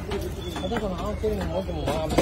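Background voices of people talking, with one sharp knock of a heavy knife on a wooden chopping block near the end.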